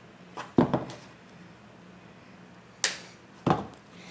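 A few short, sharp clicks and knocks from hands working a plastic zip tie and deco mesh against a metal wire wreath frame on a table. Two come close together under a second in, a sharp one near three seconds in, and another just after it.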